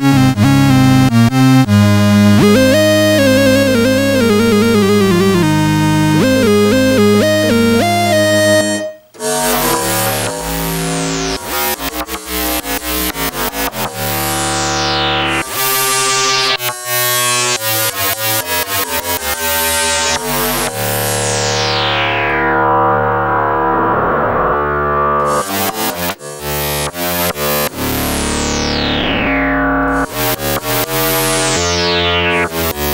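Artisan Baroque synthesizer played from its keyboard. It opens on a duophonic patch, a held low note under a wavering, gliding melody line, which cuts off about nine seconds in. Then comes a run of struck notes on an AXoR modulator patch, each bright at the attack, its brightness falling quickly away.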